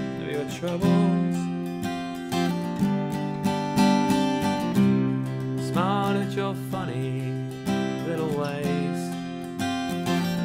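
Acoustic guitar, capo on the third fret, strummed in a steady rhythm, the chords ringing between strokes.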